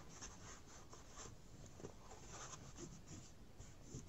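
Faint rubbing and scraping as a mini iron is pressed and pushed over fabric lining a cardboard egg carton, fusing the heat-adhesive backing.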